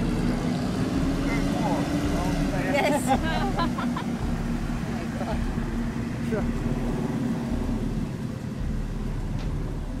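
A steady low engine drone under faint crowd chatter, with a short laugh about three seconds in.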